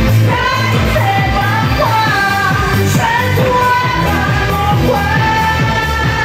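A woman singing into a handheld microphone over loud amplified pop backing music with a steady bass beat; her melody holds long notes with short glides between them.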